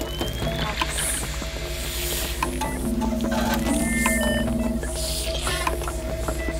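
Ambient electronic music mixed with facility machine sounds: a low steady pulsing hum, held tones, scattered mechanical clicks and ratcheting, and a few short high electronic beeps about four seconds in.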